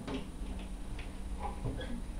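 A few faint clicks and light knocks of an acoustic guitar and its player being moved as the guitar is lifted and set aside, right after the strings stop ringing.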